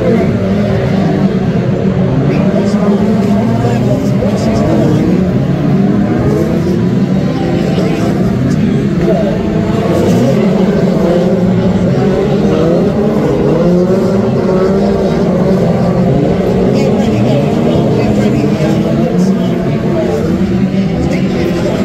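Several Brisca F2 stock car engines running loudly as the cars race around the oval, their pitch rising and falling as drivers accelerate and lift off.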